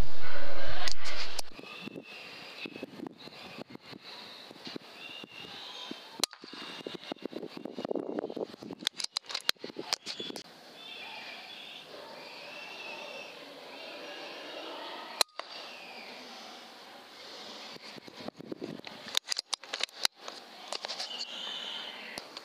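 A man laughing, then faint night-time quiet with light handling clicks and faint high chirping, and a single sharp crack about 15 seconds in: an air rifle shot taking a rat.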